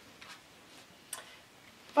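A page of a paperback picture book being turned by hand: a faint rustle of paper, then one short, crisp flick about a second in.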